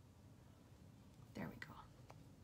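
Near silence, then a woman's voice murmuring a few soft words near the end.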